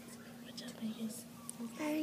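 Hushed whispering voices over a steady low hum, with a short louder voice near the end.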